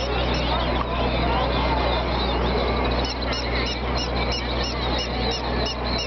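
Battery-powered toy singing birds in cages chirping electronically, rapid even chirps about three a second, fading out early and starting up again about halfway, over crowd chatter.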